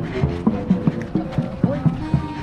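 Marching band music: brass playing short, accented notes in a steady beat of about four a second.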